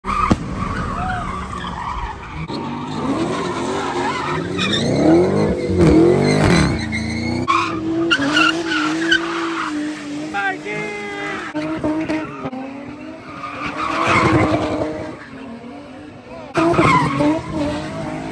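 Cars doing donuts and burnouts: engines revving hard, rising and falling, then held high for several seconds, with tyres squealing and a crowd shouting around them.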